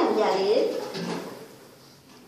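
Speech: a voice talking for about the first second, then trailing off into quiet room sound.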